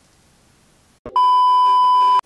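An edited-in test-tone beep for a colour-bar 'technical difficulties' screen: one loud, steady, high beep that starts abruptly after a click about a second in, with faint room tone before it.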